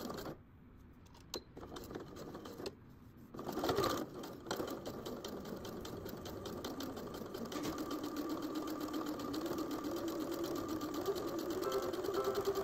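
Bernette sewing machine stitching a folded canvas hem: a couple of brief stops and starts at first, then running steadily with a rapid, even needle rhythm from about three seconds in, its hum rising slightly in pitch toward the end.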